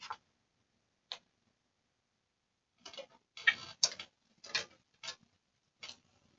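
Irregular light taps and clicks: single ones at the start and about a second in, then a quick cluster of taps from about three to five seconds in, and one more near the end.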